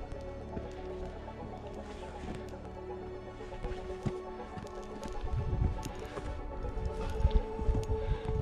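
Background music with long held notes. From about five seconds in, low rumbling gusts of wind on the microphone come in, with a few light taps and scuffs of a hiker scrambling over rock.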